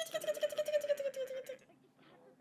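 A high-pitched, rapidly pulsing vocal sound on a slowly falling pitch, lasting about a second and a half, then fading out.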